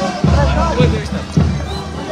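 Festival band music with a heavy drum beat about once a second, under a crowd of voices shouting and singing along.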